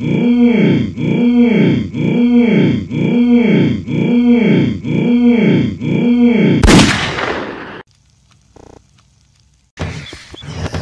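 A cartoon man's hummed 'mmm' voice sample, looped and pitch-bent so it slides up and down, repeated about nine times. About two-thirds in it is cut off by a sudden loud gunshot sound effect that fades within a second.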